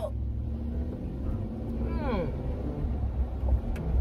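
Steady low rumble of an SUV's engine and road noise heard inside the cabin while driving, with a faint, brief vocal sound about halfway through.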